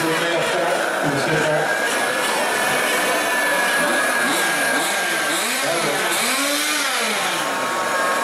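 Several 1/8-scale nitro RC car engines running together in a dense, high whine. Their revs swell up and down in the second half as they are blipped.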